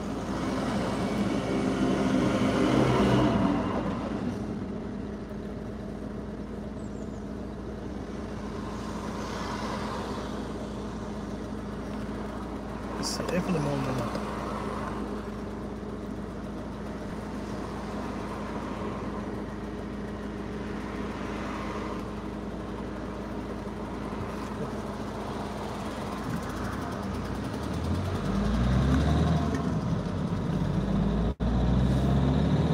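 Heard from inside a car's cabin: a steady low engine hum while the car waits at a junction, with other cars passing outside. Near the end the sound swells as the car pulls away.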